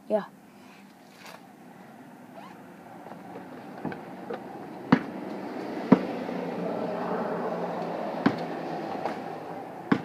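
A basketball bouncing, about four sharp single thuds spaced irregularly a second or more apart with a couple of fainter ones before them, over a steady rush of wind noise that swells in the middle.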